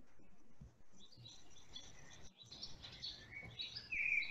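Faint outdoor ambience with small birds chirping, the chirps getting more frequent toward the end.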